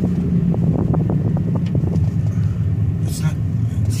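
Car running down the road, heard from inside the cabin: a steady low rumble of engine and road noise.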